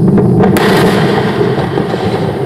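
Falcon 9 rocket exploding on the launch pad: a loud, continuous rumbling blast with a sharp crack about half a second in, followed by crackling.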